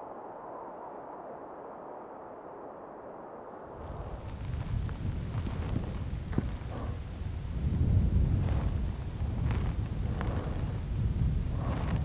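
Wind buffeting the microphone outdoors: a soft hiss for the first few seconds, then an uneven low rumble that comes in about four seconds in and gusts stronger near the middle.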